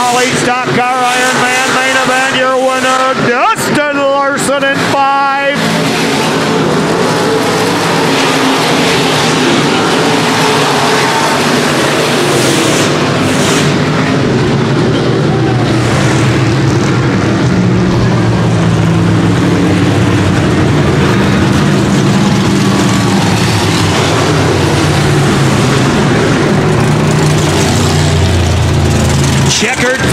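Dirt-track stock cars' V8 engines running at speed around the oval, a steady loud engine sound that grows louder and rises in pitch over the last several seconds.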